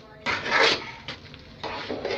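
A spoon stirring thick cooked rice-flour dough in an aluminium pot, scraping against the metal in two strokes: a longer one just after the start and a shorter one near the end.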